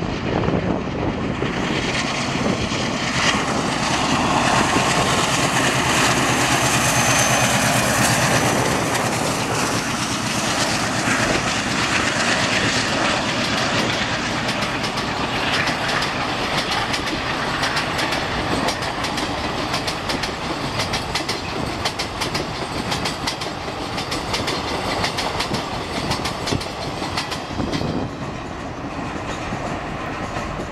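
A WDM-3A diesel locomotive's ALCO engine working hard as it hauls a long passenger train up a gradient, followed by the coaches rolling past with their wheels clattering over rail joints. The clatter is sharpest in the second half and eases slightly near the end as the train draws away.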